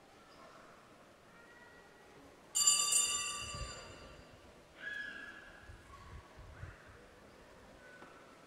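A bright metallic ring, struck once and fading over about a second and a half, then a second, shorter and lower ring about two seconds later.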